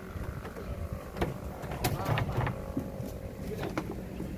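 A large wooden shelf cabinet being tilted and shifted by hand, with several sharp knocks of wood at intervals of about half a second to a second between one and two and a half seconds in.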